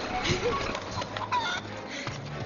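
A chicken squawking and clucking, several short calls in quick succession.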